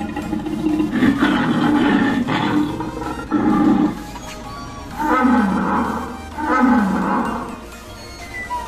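Animatronic Tyrannosaurus rex giving recorded dinosaur roars through its loudspeaker: four roars, the last two sliding down in pitch.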